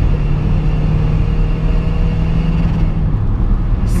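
Seat Ibiza 6J 105 hp TDI four-cylinder turbodiesel, on a remapped ECU, held at high revs under hard acceleration, heard from inside the cabin. Its steady engine note drops away about three seconds in.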